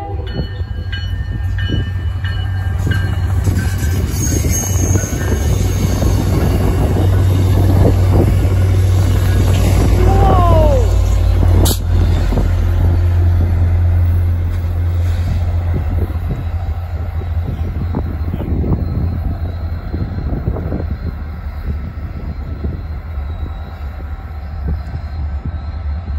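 MBTA commuter train passing close by, pushed by its F40 diesel locomotive at the rear: a steady low diesel drone and rolling-stock rumble that swells as the locomotive goes by. About ten seconds in comes a short squeal falling in pitch, then a sharp click.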